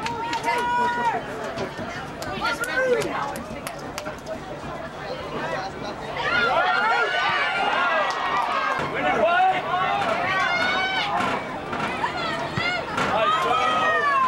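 Spectators shouting and calling out over one another during play, with louder, denser overlapping yells from about six seconds in.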